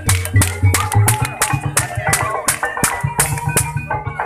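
Live Banyumasan gamelan music accompanying an ebeg dance, with sharp drum strokes several times a second over the ensemble.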